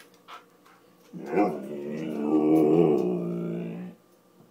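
Siberian husky 'talking': one long, drawn-out moaning vocalisation of nearly three seconds, starting about a second in and wavering slightly in pitch. It is the dog's demand for food.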